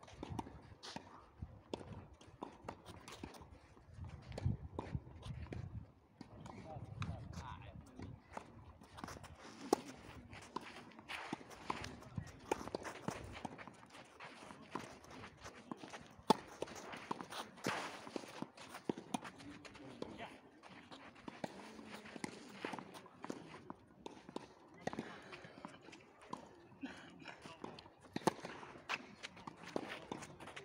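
Tennis rally on a clay court: balls struck by racquets with sharp pops, the loudest about ten and sixteen seconds in, among footsteps and shoes scuffing on the clay.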